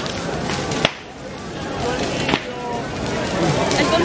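Large effigy bonfire burning: a steady rush of flames broken by two sharp cracks, about a second in and again past two seconds, with crowd voices in the background.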